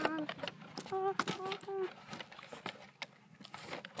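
A high-pitched voice making four short, even vocal sounds about a second in, over scattered light clicks and knocks.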